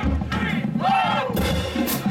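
Marching band percussion, with drums beating and a cymbal line crashing, while band members shout. One loud yell about a second in.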